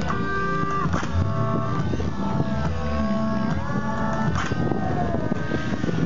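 Radio-controlled 3D aerobatic helicopter in flight, its rotor and drivetrain whine gliding up and down in pitch as it throws manoeuvres, mixed with background music.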